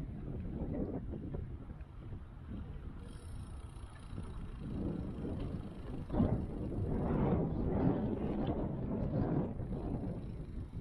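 Wind buffeting the microphone of a bike-mounted action camera as the bicycle rolls along, an uneven low rumble that swells and fades.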